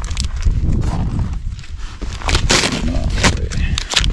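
A paper target sticker is peeled and torn off a cardboard target backer, with a couple of short, rough tearing rasps in the second half, over a steady low rumble.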